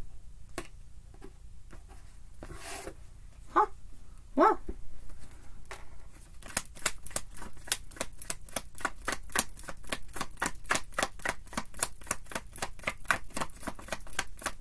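Tarot cards being handled and then shuffled overhand: a few scattered card clicks at first, then from about halfway a rapid, steady run of card slaps at roughly seven a second. Two short hummed voice sounds come a little before the middle.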